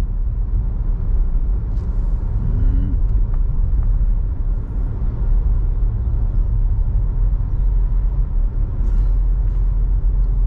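Steady low rumble of a car driving at road speed, engine and tyre noise heard from inside the cabin.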